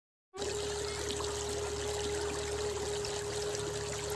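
Water of a shallow stream running over stones, a steady rushing hiss, starting about a third of a second in. A single steady held tone sounds over it.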